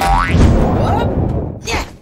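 Cartoon 'boing' sound effect of a character bouncing on a giant jelly: a springy rising twang at the start, followed by a low wobbling rumble that fades out near the end.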